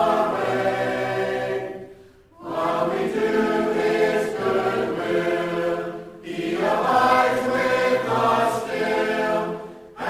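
A church congregation singing a hymn a cappella, many voices in harmony in long held phrases, with short breaks between lines about two seconds and six seconds in.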